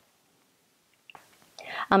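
Near silence in a pause of speech, then a breathy intake of breath and a woman saying 'um' near the end.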